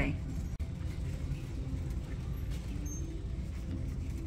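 Store background: a steady low rumble with faint distant voices, and a brief dropout about half a second in.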